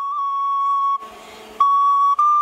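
Recorder playing long held high notes: the first wavers briefly at its start, then holds steady until it stops about a second in, and after a short gap another held note begins.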